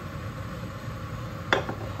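A single sharp knock of a wooden spoon against the metal cooking pot about one and a half seconds in, over a steady low background hum.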